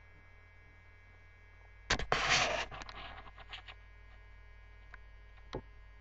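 Steady electrical mains hum, broken about two seconds in by a sudden loud burst of noise that dies away over about a second, followed by a few faint clicks.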